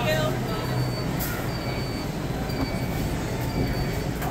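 Busy grocery-store ambience: a steady low hum under a murmur of shoppers' voices, with a faint high-pitched beep repeating about every two-thirds of a second.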